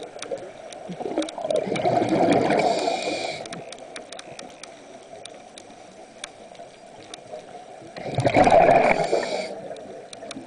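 Scuba diver breathing through a regulator, recorded underwater: two breaths, a gurgling rush of exhaled bubbles mixed with the regulator's hiss, one in the first few seconds and one about eight seconds in, with a quieter lull between them. Faint scattered clicks run underneath.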